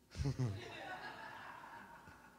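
A man chuckling close on a handheld microphone: a couple of short, louder bursts of laughter about a quarter second in, then softer laughter trailing off.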